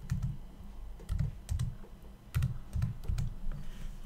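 Typing on a computer keyboard: about eight separate key presses at an uneven pace, each a short click with a soft low thud.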